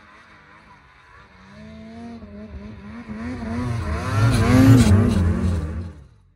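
Snowmobile engine revving and wavering in pitch as the sled ploughs through deep powder, growing louder as it comes close and is loudest about four to five seconds in, with a hiss of snow spray as it passes. It cuts off suddenly at the end.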